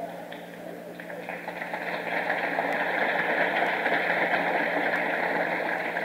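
A lecture audience laughing and applauding at a joke, on an old tape recording. The noise swells over the first two seconds and then holds steady.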